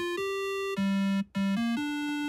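Syntorial's built-in software synthesizer playing the hidden challenge patch: a looping phrase of short sustained notes with a bright, buzzy tone. A higher note is held for about half a second, then lower notes repeat and step up in pitch.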